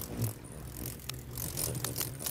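Cartoon hummingbirds' wings humming as they fly in and hover: a low, steady whirring buzz, with a few short ticks about a second in and near the end.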